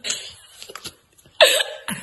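Young children giggling: breathy, gasping laughter that dies away, a short lull with a few small clicks, then a sudden explosive burst of laughter about one and a half seconds in.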